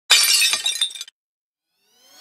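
Glass-shattering sound effect: a sudden crash followed by about a second of tinkling shards, cutting off abruptly, then silence.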